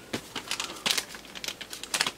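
Small clear plastic parts bag crinkling as it is handled, a run of irregular crackles.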